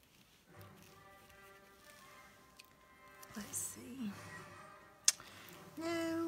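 A voice singing softly in long held notes, music-like, with one sharp click about five seconds in.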